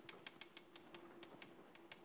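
Chalk tapping and scratching on a blackboard as words are written: a faint, irregular run of quick clicks over a faint steady hum.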